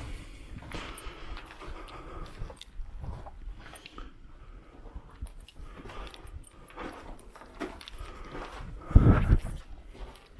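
Footsteps crunching and scuffing over loose brick rubble and grit on a cellar floor, irregular and uneven, with a louder low thud about nine seconds in.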